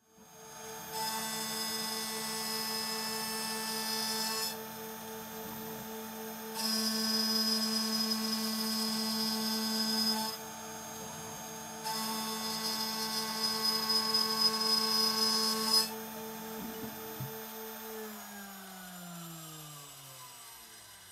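Shariff DMC2 desktop CNC mill's spindle running with a steady whine while its end mill cuts an aluminium plate in three passes of a few seconds each, each pass louder and noisier. Near the end the spindle spins down, its whine falling in pitch.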